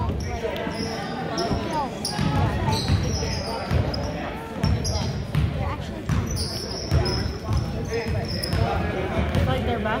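Basketball bouncing on a hardwood gym floor as it is dribbled, in repeated thumps about one or two a second, with short high squeaks from sneakers and a reverberant hall.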